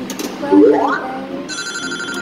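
Williams FunHouse pinball machine's electronic sounds from its speaker: a rising synthesized sweep about half a second in, then a steady high electronic tone from about a second and a half in, with a few sharp clicks from the playfield.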